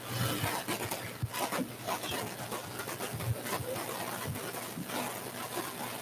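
Background noise of a large hall with a seated audience: an even hiss with faint, scattered low sounds and no clear speech.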